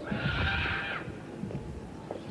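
A horse whinnies once, a pitched call lasting about a second that stops sharply, over the low thuds of its hooves.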